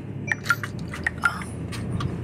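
Inside a car cabin: the steady low hum of the running car, with a scattering of small, irregular clicks.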